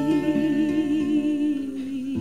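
Live recording of a Greek popular song near its end: a voice holds one long note with a wide vibrato over acoustic guitar chords, the pitch stepping down slightly near the end.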